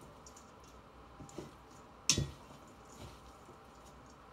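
Salad being tossed with pesto in a bowl: faint squishing of leaves and a few soft clicks of the utensil against the bowl, the sharpest knock about two seconds in.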